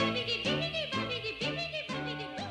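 Upbeat children's TV song: a high voice sings a wavering melody over a band with a steady, bouncing bass line.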